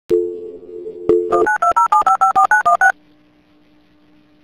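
Telephone line going off-hook with a click into a steady dial tone, a second click, then a rapid run of about ten touch-tone (DTMF) digits being dialed. After the dialing a faint steady hum stays on the line.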